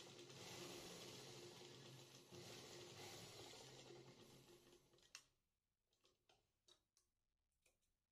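Near silence: faint room hum that drops away after about four seconds, with a single faint click a little past the middle.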